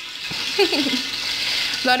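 Fish sizzling as it fries in a pan on a gas stove, a steady hiss that comes up about a third of a second in. A brief voice-like sound comes over it around the middle.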